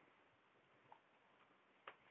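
Near silence with two faint short clicks, about a second apart, the second sharper.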